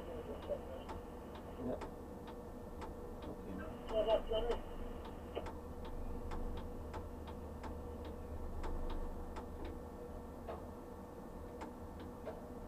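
Steady, evenly spaced ticking, about two ticks a second, over a low steady hum inside a tower crane's operator cab.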